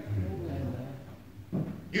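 A short, low hummed vocal response, like an "mm-hmm", then faint murmuring voices in the room before the preaching resumes.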